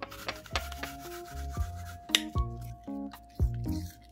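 A kitchen knife cutting into a whole raw apple: repeated crisp, rasping slicing strokes, over background music.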